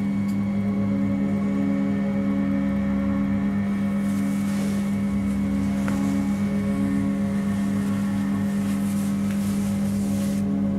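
Sustained low, droning horror film score: steady held tones with a slow gentle pulse. From about four seconds in, a faint rustling hiss sits over it.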